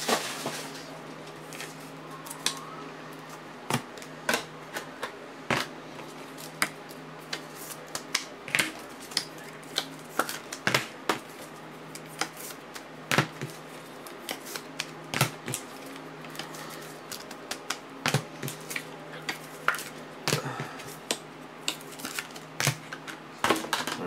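Irregular clicks and taps of trading cards and rigid plastic top loaders being handled and set down on a table, over a steady low hum.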